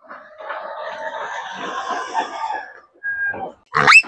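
A flock of chickens clucking and calling over one another. Near the end, a loud squawk that rises in pitch comes from a bird as it is grabbed.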